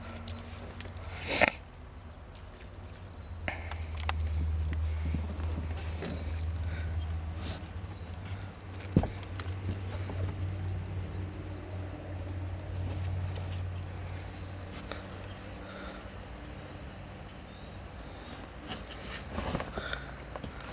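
Hands handling wire and a plastic heat-shrink crimp butt connector while a stripped wire is pushed into it: quiet fumbling with scattered small clicks, one sharp click about nine seconds in, over a low rumble that swells and fades.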